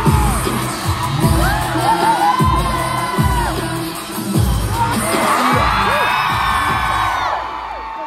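K-pop track through a concert hall's PA, with deep bass hits that drop in pitch about once a second, and a crowd of fans screaming and whooping over it.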